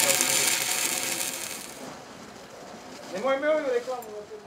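Stick-welding arc on a steel pipe joint, a steady crackling hiss that dies away about halfway through as the arc is broken. A short burst of a man's voice follows near the end.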